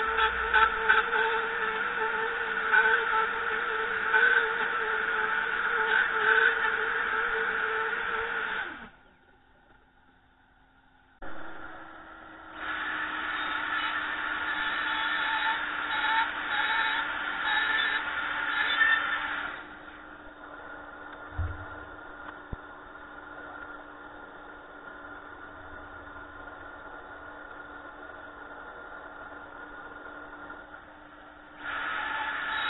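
Electric plunge router running with a steady high whine for about nine seconds, then winding down and stopping. After a short pause a dust extractor starts with a lower steady hum. The router runs again for about seven seconds, then the extractor hums on alone, with one knock partway through.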